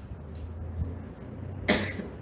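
A single short cough into a handheld microphone near the end, over a low steady hum from the sound system.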